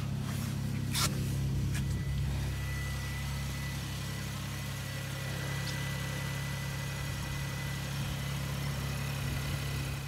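Volkswagen up! GTI's 1.0-litre turbocharged three-cylinder engine idling steadily, with a single sharp click about a second in.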